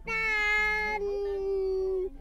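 A person's long, drawn-out cry of alarm inside the car as a coach cuts across right in front of it, held on one pitch and then dropping a step lower about halfway through.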